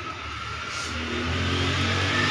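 A motor vehicle's engine running, getting steadily louder over the two seconds.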